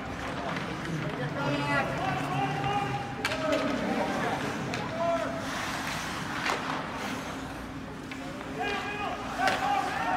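Ice hockey game in an indoor rink: players and spectators shout at a distance, with sharp clacks of sticks and puck now and then over a steady low rink hum.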